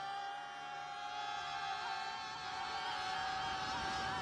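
Orchestral film score holding a sustained chord that began just before, its upper notes wavering with vibrato.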